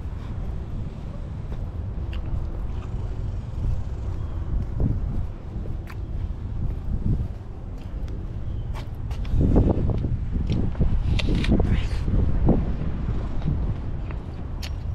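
Wind rumbling on the microphone as someone walks across asphalt, with scattered footsteps and knocks. The sound gets louder and gustier in the later seconds.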